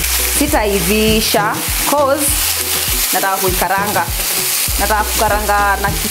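Chicken pieces sizzling in a hot frying pan while a spatula turns and stirs them, with background music playing over it.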